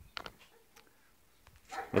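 A dog barking in a few short barks, some near the start and a louder one near the end.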